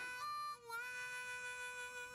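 Harmonica holding one long note in a western-style music cue, with a brief break about half a second in, after which the note sits slightly higher.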